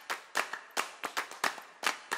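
Sharp hand claps in an uneven rhythm, about three or four a second.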